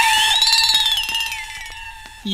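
Sudden ringing sound-effect sting with a steady tone and a second pitch that rises and then falls, fading out over about two seconds.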